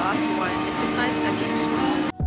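Busy shop ambience: a steady wash of background noise with music playing, and a woman's voice talking quietly over it.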